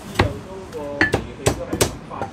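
A Chinese cleaver chopping braised pork knuckle on a thick wooden chopping block. There are about six sharp strikes: one near the start, then a quick run of blows in the second half.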